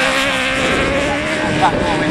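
Class 8 autograss racing buggy's engine held at high revs as it slides across a loose, wet dirt track, a steady engine note.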